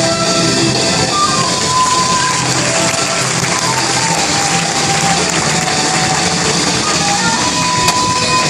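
Instrumental performance music playing steadily, with a melody of held notes over a full backing.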